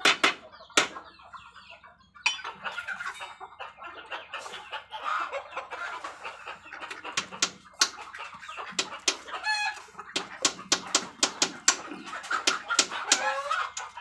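Chickens clucking amid a flock of Muscovy ducks and chickens foraging on bare dirt. Many quick, sharp clicks of bills pecking at the ground run throughout, and a short, clearer bird call comes about two-thirds of the way through.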